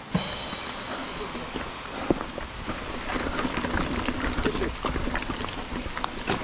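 2019 Giant Trance 3 full-suspension mountain bike rolling over a dirt and rocky trail: steady noise from the tyres on the ground and the bike rattling over the bumps.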